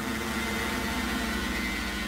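Title-card sound effect: a steady buzzing drone of several held tones under static hiss.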